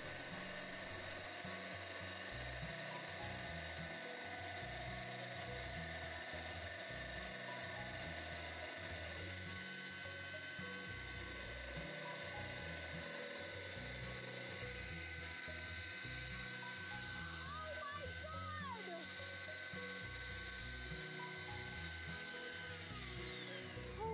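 Drill press running with a diamond-plated bit grinding a hole through a glass headlight lens, a steady whine throughout. About a second before the end the whine stops and falls in pitch as the drill spins down.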